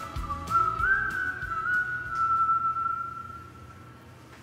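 A whistled melody closing out a pop song's instrumental outro: a single high line stepping up and down over faint accompaniment, then one held note that fades out about three seconds in.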